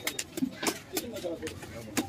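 Large fish knife chopping through a bluefish onto a wooden chopping block: a handful of sharp knocks in quick, uneven succession.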